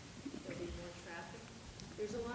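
A woman's voice speaking quietly in short, halting bits.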